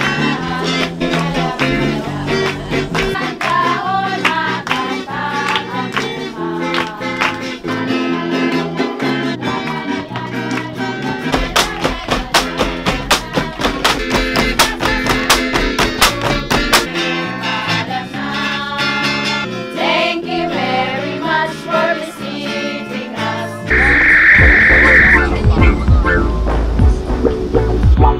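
A live folk band of acoustic guitars plays with singing to accompany a Philippine folk dance. Partway through, a run of sharp rhythmic clacks joins in, as the bamboo poles of the tinikling dance are struck. Near the end the music gives way to a louder low rumble with a brief steady high tone.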